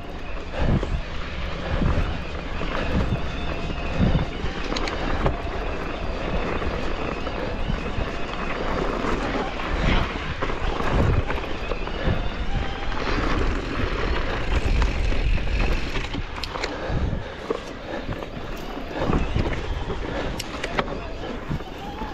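Electric mountain bike riding a rocky dirt trail: tyres rumbling and crunching over stones, with frequent short knocks and rattles from the bike over bumps, under steady wind buffeting on the microphone.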